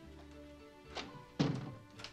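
Front door pushed shut: a light click about a second in, then a louder thunk as it closes, over soft sustained background music.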